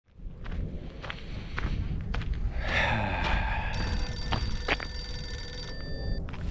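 A mobile phone ringtone sounds from about three seconds in and stops shortly before the end. Under it are footsteps at about two a second and a low rumble of wind on the microphone.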